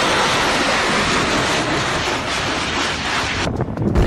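Loud, steady rushing roar of rockets being launched, cutting off about three and a half seconds in.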